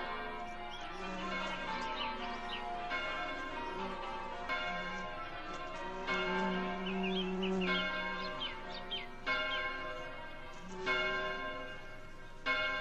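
A peal of several church bells ringing, one strike after another, with birds chirping over the top.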